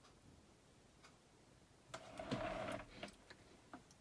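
Faint room tone, then about two seconds in a short scuffing of an acrylic canvas panel being turned around on the work surface, followed by a few light taps.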